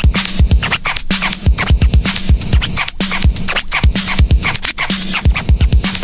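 Old-school electro hip hop: a drum beat with deep booming kicks and a held bass note, with turntable scratching over it.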